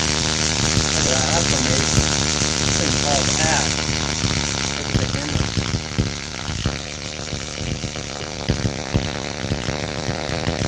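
Spark gap Tesla coil firing: a loud, continuous electrical buzz from the spark gap and discharge, which drops somewhat in level about two-thirds of the way through.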